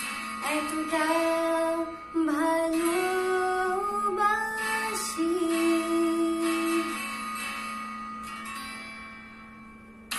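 A woman singing a slow Bengali love song over guitar accompaniment, her line gliding between notes and holding a long note that fades away over the last few seconds.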